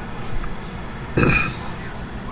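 A man burps once, briefly, a little over a second in.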